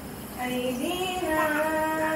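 A high voice chanting in long held notes that step and slide slowly in pitch, starting about half a second in.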